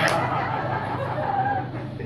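Audience laughing after a joke, the laughter fading away towards the end.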